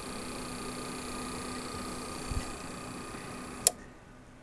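APC RS 1500 UPS running on battery: the inverter's steady hum with a high whine and its cooling fan. Near the end a sharp click as the transfer relay switches back to mains power, and the hum and fan stop.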